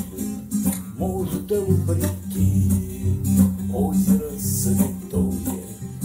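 Acoustic guitar strumming chords in a steady rhythm, an instrumental passage between sung verses.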